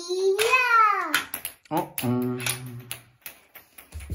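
A child's wordless vocalising: a long held "ooh" that rises, then slides down within the first second, followed by shorter hummed or sung sounds, with a few sharp clicks and knocks scattered through.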